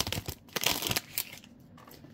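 Foil Topps Chrome card-pack wrapper crinkling and tearing as it is opened: a dense run of crackles in the first second or so, then only faint rustles.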